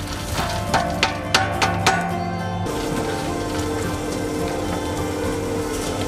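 Spiral dough mixer running as dried fruit is tipped into its steel bowl: a quick run of clicks and patters for about the first two seconds, then a steady hum of the mixer working the fruit into the dough.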